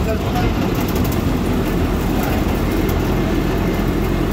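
A truck's diesel engine and road noise heard steadily from inside the cab while driving at speed.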